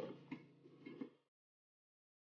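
Near silence: a few faint ticks, then the sound cuts out to dead silence about a second in.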